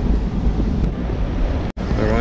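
Low rumbling noise with wind buffeting the microphone of a handheld action camera as it moves. The sound breaks off for an instant near the end, at a cut.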